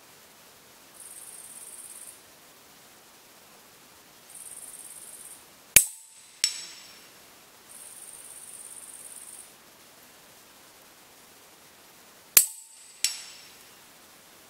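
Two shots from a .22 Huben K1 PCP air rifle firing cast lead slugs, about six and a half seconds apart. Each sharp report is followed about two-thirds of a second later by a fainter ringing clang of the slug striking a steel target downrange. Faint high hiss comes and goes three times between the shots.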